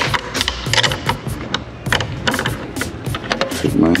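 Irregular small clicks and taps of a 10 mm wrench on the windscreen screws as they are tightened, over background music.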